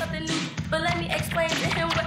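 Rap vocal over a hip-hop beat, the verse running on with a steady rhythmic pulse underneath.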